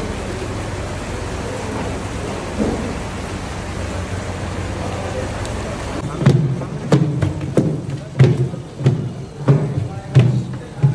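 A steady hiss of a wood fire under a large pot of simmering curry. About six seconds in, a ladle starts scooping and stirring thick chicken gravy in the big metal pot, with a knock or thud every half second or so.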